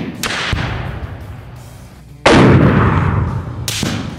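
Rifle shots fired at a target, each sharp crack followed by a long rolling echo. The loudest comes a little over two seconds in, another crack comes near the end, and at the start the echo of the shot just before dies away.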